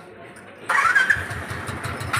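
Royal Enfield Classic 350's single-cylinder engine cranking and catching about two-thirds of a second in, then settling into a fast, even low thumping at idle.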